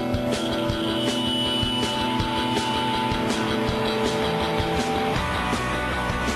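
Rock band playing live: drum kit keeping a steady beat under electric guitars. The low end grows fuller about five seconds in.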